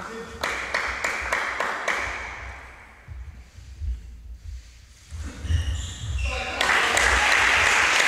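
Sharp clicks of a table tennis ball during a rally, then from about six and a half seconds in the crowd applauds loudly for the won point.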